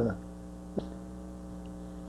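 Steady electrical mains hum on the recording, with a single short click a little under a second in.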